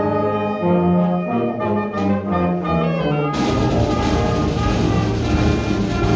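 School concert band of saxophones, trumpets, trombones and tuba playing a piece, with clear held and moving notes. About three seconds in, the sound turns denser and noisier, with a hiss-like wash across the high end.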